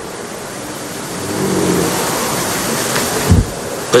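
Steady rushing hiss of background noise through a pause in speech, with a faint murmur of voices and a single low thump shortly before the end.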